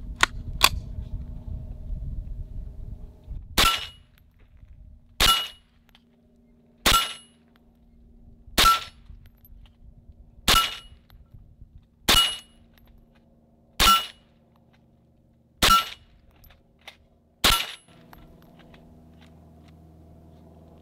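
A .22 caliber rifle fired nine times at a steady pace, about one shot every two seconds. Each shot is followed by a short metallic ping from the bullet striking a steel target.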